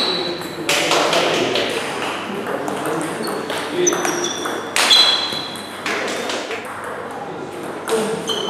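Table tennis rally: the plastic ball clicking sharply off the bats and the table in quick succession, many hits followed by a short high ring, in a large echoing hall.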